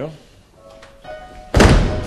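A few faint held musical tones, then a sudden loud thud about one and a half seconds in, heavy in the bass with a short ringing tail.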